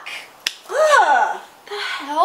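A single sharp finger snap about half a second in, followed by a woman's wordless vocal exclamation whose pitch rises and then falls.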